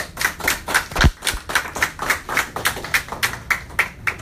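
A small audience clapping, the claps sharp and distinct at about four a second, with a single low thump about a second in.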